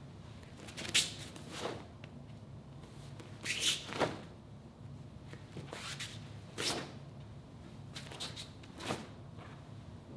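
Taekwondo uniform snapping and swishing with each punch, block and kick of a poomsae, about eight sharp swishes spaced unevenly, over a faint steady room hum.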